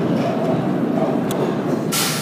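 Subway train noise in a station: a loud, steady rumble and rattle, with a couple of sharp clicks near the end.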